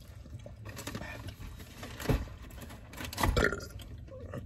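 A person burping, twice, about a second apart, the second one longer.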